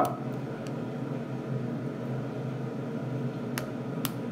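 Steady low room hum, with two sharp small plastic clicks near the end as a toy car launcher is handled.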